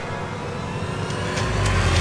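Background music over a rushing, rumbling sound effect that comes in and grows louder about one and a half seconds in.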